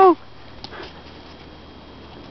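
A drawn-out laughing word from a woman ends just at the start, then quiet outdoor background with a few faint, soft sniffs as a dog noses at a stick on the snow.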